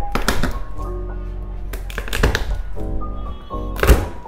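Several thuds and cracks as garlic cloves are crushed under the flat of a kitchen knife pressed down on a plastic cutting board, the loudest strike near the end, over background music.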